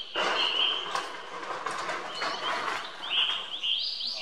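Small birds chirping over and over in short high calls, with a loud rushing noise for most of the first second and again a little past two seconds.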